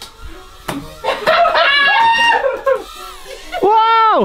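Excited wordless shouts and yells, a long rising-and-falling one near the end, over background music.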